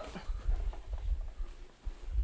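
Handling noise as a heavy amplifier with coiled cables is lifted off a cardboard box and set down on the floor: soft, irregular knocks and rustling with low bumps.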